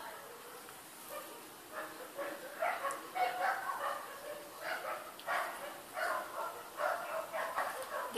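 A dog barking repeatedly off-mic, short barks coming about one or two a second from about two seconds in.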